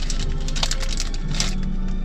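Crinkling of a plastic bread wrapper as the bread is bitten and eaten, a run of small crackles over background music.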